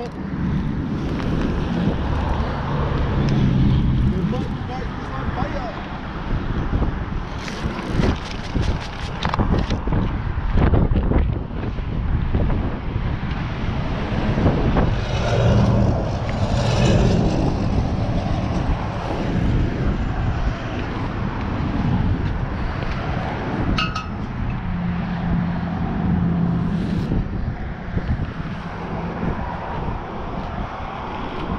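Steady outdoor roar of passing road traffic and wind on the microphone, with low tyre hums swelling and fading as vehicles go by. A quick run of sharp clicks comes about eight seconds in.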